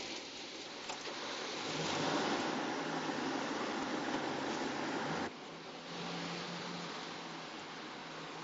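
Car and street traffic noise: a steady hiss over a low engine hum. It drops suddenly to a quieter hiss about five seconds in.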